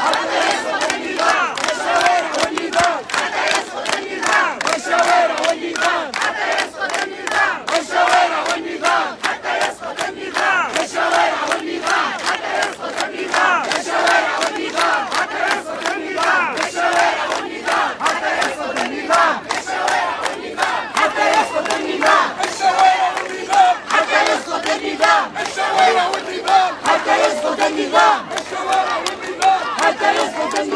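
Large crowd of protesters shouting slogans and clapping, many voices together over dense handclaps.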